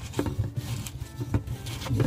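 Plastic retaining ring on a Miele dishwasher's upper spray arm being twisted loose by hand: plastic rubbing, with a few small clicks.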